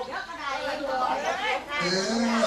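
A voice chanting verse in unaccompanied Korat folk song (phleng Khorat), its pitch sliding between sung notes; a lower voice comes in near the end.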